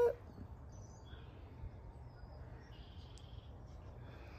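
Quiet background with a steady low hum and a few faint bird chirps, about a second in and again around three seconds in.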